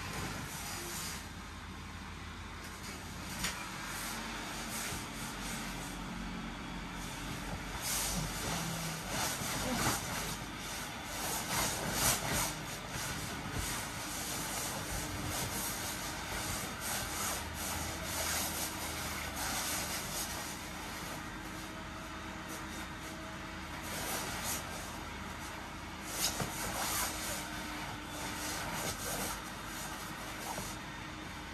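An inflatable costume's blower fan runs steadily, with the plastic suit rustling and creaking as the wearer moves inside it, busiest around the middle and again near the end.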